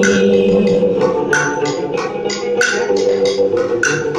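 Live traditional Vietnamese instrumental music: a string instrument holds sustained notes while a wooden percussion instrument is struck in short, sharp, irregular strokes, about one to three a second.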